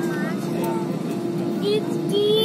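Steady airliner cabin drone with a constant hum-tone, under passengers' voices; a high-pitched voice rises over it near the end.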